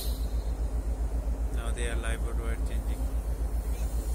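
Steady low machinery rumble pulsing rapidly and evenly, with a short burst of a voice in the middle.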